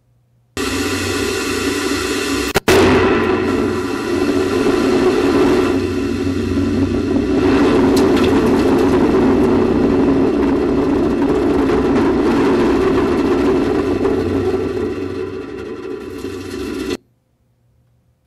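Loud, steady roar picked up by the onboard camera microphone of a Space Shuttle solid rocket booster, with a ringing whine running through it. It starts abruptly, drops out for a moment early on, and cuts off suddenly about a second before the end.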